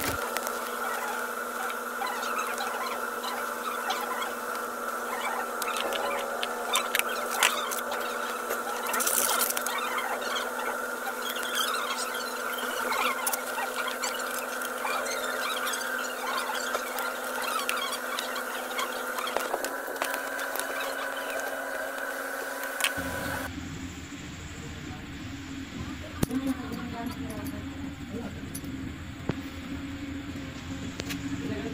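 A steady hum made of a few held tones, with small clicks and scratching of a stranded copper battery cable and a metal clamp terminal being handled. The hum changes abruptly about three quarters of the way through.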